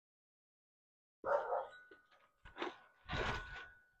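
A man chewing a mouthful of smash burger with crispy edges, heard as three short, soft bursts about a second apart after a moment of silence.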